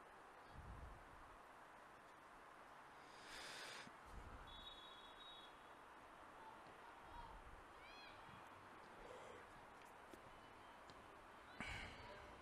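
Near silence: faint outdoor ambience with a few faint, distant short high-pitched calls and a faint knock near the end.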